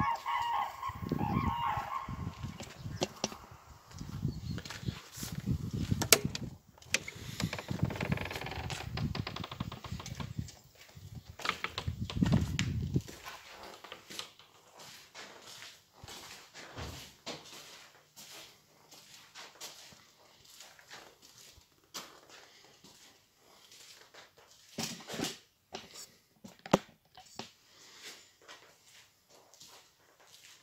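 A rooster's crow trails off at the start over the low rumble and rustle of a phone camera being carried against the body while walking. After about 13 seconds it drops to quiet indoor scuffs and scattered clicks and knocks, with one sharp knock near the end.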